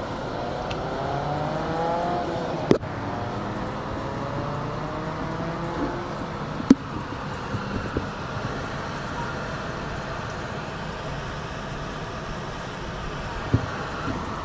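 Car engine and road noise heard from inside the cabin, the engine note rising gently in pitch over the first several seconds as the car pulls forward. Two sharp clicks stand out, about three and seven seconds in.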